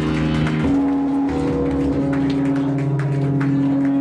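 Live heavy-metal band playing: distorted electric guitars hold long sustained notes, stepping up in pitch about a second in, over drum and cymbal hits.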